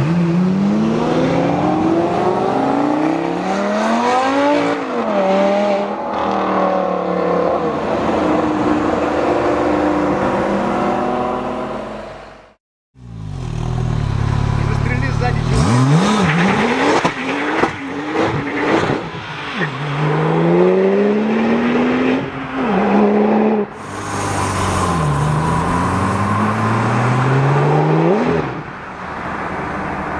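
Sports car engine revving hard as it accelerates away, the pitch climbing and dropping at each gear change. The sound cuts out briefly about 13 s in. Then a Porsche 997 GT2's twin-turbo flat-six accelerates through several upshifts, the pitch rising and falling with each change.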